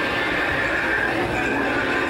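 Dinosaur calls from the Primeval World diorama's show soundtrack: a long, wavering high-pitched cry over the diorama's background sound.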